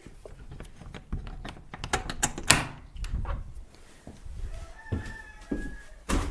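Blue-fronted Amazon parrot pecking and nibbling at the microphone with its beak: a run of close clicks and knocks, the loudest about two and a half seconds in. Near the end the parrot gives a short, level whistled call.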